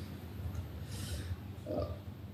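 A man's short, sharp breath near the microphone about a second in, over a steady low room hum, followed near the end by a brief spoken 'uh'.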